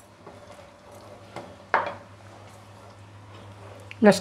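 Quiet kitchen handling at a steel pot on the stove: a low steady hum with faint small knocks, and one sharp clink a little under two seconds in.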